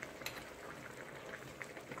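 Faint sizzling and bubbling of pork pieces cooking in an aluminium pan over a gas flame, with a few light clicks as a metal spoon stirs against the pan.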